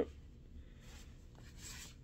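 Faint rustling of paper cards being handled, a little stronger in the second half.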